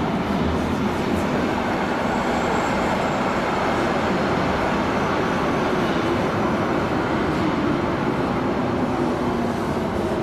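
Green DUEWAG U2-type light-rail train pulling into an underground station, its wheels and motors giving a steady rumble that runs on as the cars slide past the platform.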